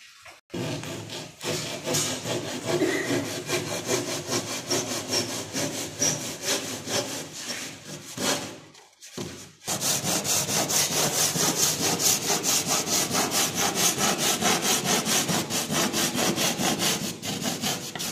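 Hand saw cutting through gypsum board in quick back-and-forth strokes. There is a short pause about halfway, after which the strokes come steadier and louder.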